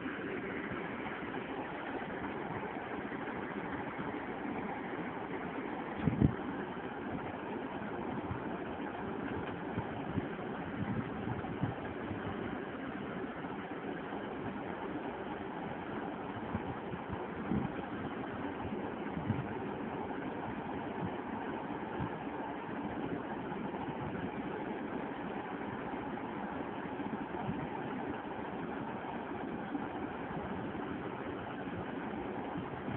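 Steady background hum with no speech, broken by a few dull bumps, the loudest about six seconds in.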